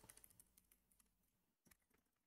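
Faint computer keyboard typing: scattered key clicks that thin out over the first half second, then one more click near the end.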